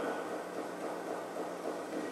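Steady faint hiss with a low hum underneath: room tone.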